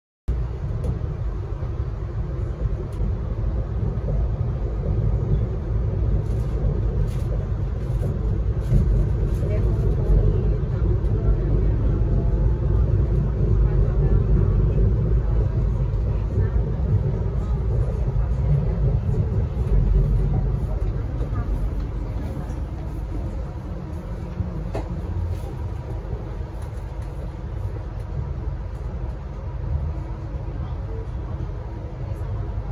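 Steady low rumble of a moving passenger train heard from inside the carriage, easing slightly about two-thirds of the way through.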